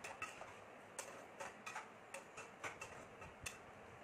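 Metal slotted spatula clicking and scraping against a non-stick frying pan while food is stirred, as light, irregular ticks about two or three a second.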